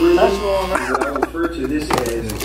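Indistinct voices talking in a small room over background music.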